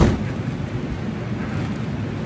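A sharp knock at the very start, then steady low fan noise from a laminar flow hood's blower behind its filter panel.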